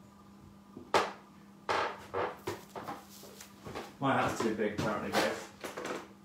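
A sharp knock about a second in, followed by several lighter knocks and rustles and indistinct voices, over a steady low hum.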